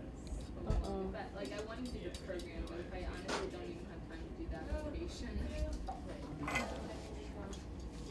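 Indistinct chatter of several voices in a room, with a few light clinks of metal tools on a bench.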